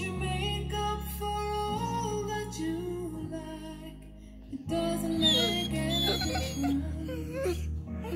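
Slow, gentle background music: a melody over sustained bass notes, dipping briefly in loudness about halfway through before picking up again.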